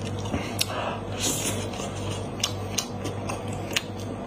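Close-miked eating of braised goat-head meat: wet chewing with several sharp smacking clicks and a short breathy hiss about a second in.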